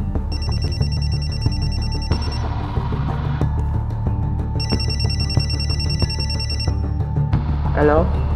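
Mobile phone ringing in two rings of about two seconds each, a fast trilling electronic tone, over steady low background music.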